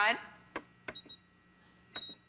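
Front-panel buttons of a Singer Special Edition computerized sewing machine pressed a few times, each press a sharp click, some with a short high beep. This is the machine's delete function clearing a programmed lettering sequence one character at a time, like backspace.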